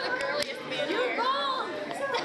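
Teenagers' hand-clapping game: a couple of sharp palm claps at the start, then high, excited voices and laughter over background chatter.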